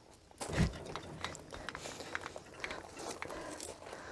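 Trailer tongue jack being hand-cranked down onto a wooden block: a low thump about half a second in, then a run of small irregular clicks and scrapes from the crank and gears.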